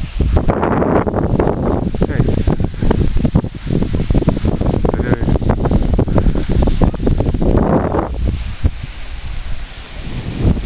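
Wind on the camera microphone: a loud low rumble with crackly rustling and handling noise throughout.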